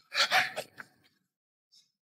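A woman gasps in shock, two quick breathy intakes in the first half second, followed by a short tick.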